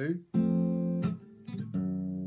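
Acoustic guitar chords: one struck about a third of a second in and left ringing, a quieter note, then another chord near the end, a walk-up in the bass from the F chord.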